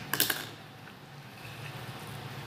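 Orange plastic screw cap being twisted off a clear jar: a quick run of sharp clicks near the start.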